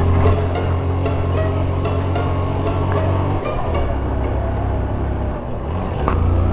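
Motorcycle engine running at a steady cruise. Its revs drop a little about halfway through as the bike eases off.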